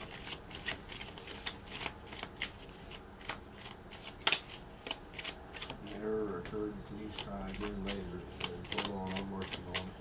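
A tarot deck being shuffled by hand: a run of quick, irregular card snaps and flicks. A faint, murmuring voice joins in during the second half.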